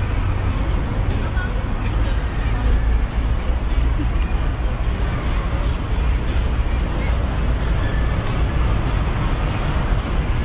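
City park ambience: a steady low rumble of road traffic, with the voices of people passing by.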